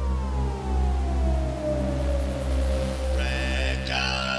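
Synthpop intro: a synthesizer tone sweeps steadily down in pitch and settles about three seconds in, over a deep pulsing bass. Brighter synth layers come in near the end.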